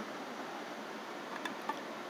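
Steady low hiss of room tone, with two faint light ticks near the end as a screwdriver's steel tip touches the tin lid of a pull-top can.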